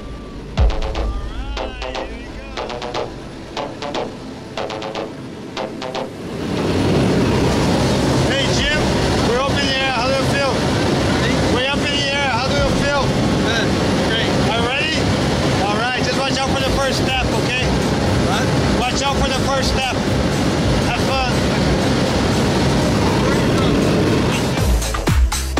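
Small plane's engine and propeller droning loudly and steadily inside the cabin, with voices raised over it; the drone comes in suddenly about six seconds in, after a quieter stretch.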